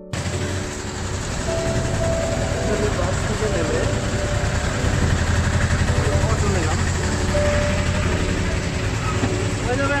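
Bus stand traffic noise: a bus engine running with a steady low rumble that grows louder toward the middle, under background chatter.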